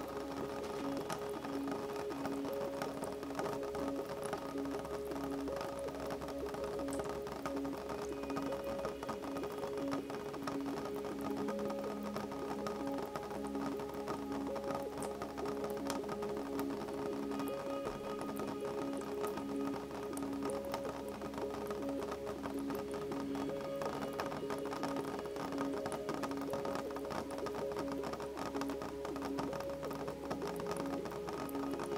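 Calm, slow ambient music with long held notes, over light rain pattering steadily on a window as a dense, fine ticking of drops.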